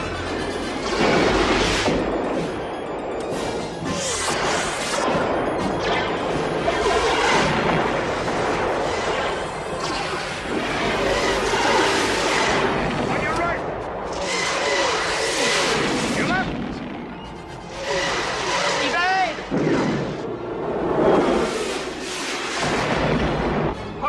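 Sci-fi film battle soundtrack: an orchestral score mixed with laser-fire sound effects and explosion booms, with many sweeping pitch glides.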